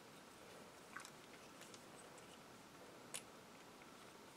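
Near silence broken by two small plastic clicks as model-kit parts are handled and fitted together: a faint click about a second in and a sharper one about three seconds in.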